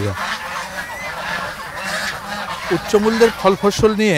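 A flock of farm ducks quacking together in a dense, chattering clamour, with a man's voice coming in over it near the end.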